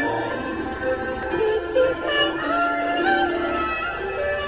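A solo voice singing a slow Christmas ballad over a backing track, holding long notes and sliding between pitches.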